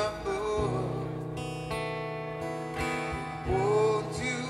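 Live reggae band playing: strummed acoustic guitar over bass and a steady drum beat, with a sung line shortly after the start and another near the end.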